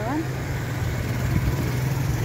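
Street traffic noise with the steady low hum of a running vehicle engine.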